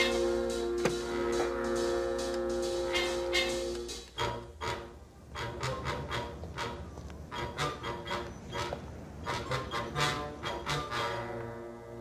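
Orchestral film score with brass: sustained chords for about the first four seconds, then a quieter passage of short, sharp accents.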